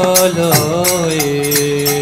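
A voice sings a devotional hymn to Lord Narasimha in long, held, gently sliding notes. Hand cymbals keep a steady beat of about three strikes a second.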